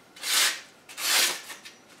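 Kershaw Camp 14 machete edge cutting through a sheet of paper in a sharpness test: two short papery rasps, each about half a second, the second about a second in.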